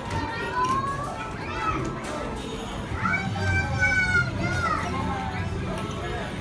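Young children's voices calling out over a steady background din, with one longer high-pitched call from about three seconds in.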